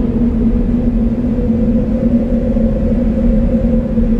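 A low, steady musical drone with rumble beneath, from a sombre background score.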